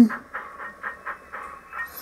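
Sound decoder in a model GWR steam tank locomotive, No. 1363, playing steady exhaust chuffs, about four a second, as the locomotive runs in reverse under DCC throttle control.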